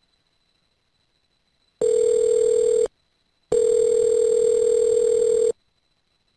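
Telephone ringback tone over a phone line: a low steady tone sounding twice, first for about a second and then for about two seconds, signalling that the called phone is ringing.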